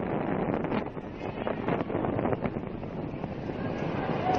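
Tsunami wave surging ashore, heard as a steady noisy rush of water and wind on an amateur recording, with wind buffeting the microphone and a few sharp clicks.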